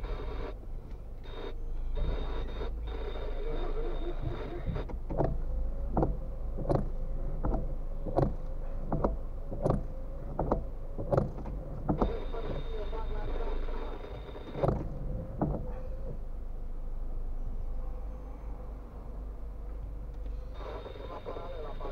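Car windscreen wipers running for about ten seconds in the middle, with a steady motor hum and a regular knock a little more than once a second.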